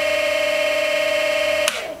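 Golden Motor BLT-650 brushless electric motor spinning with no load on 38 V, at about 1016 RPM, giving a steady high-pitched whine. The whine cuts off suddenly with a click near the end.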